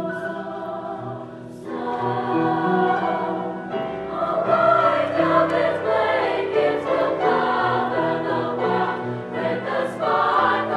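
Women's choir singing held chords, growing louder about two seconds in and fuller again about four seconds in.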